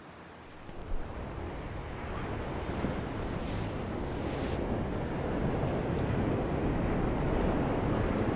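Surf washing on the beach with wind on the microphone, a steady rush that slowly grows louder.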